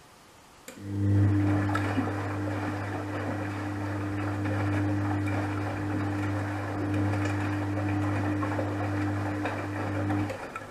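Gorenje WA72145 washing machine starting a drum turn during its wash: a click, then the drive motor's steady hum as the wet laundry tumbles and sloshes in the drum.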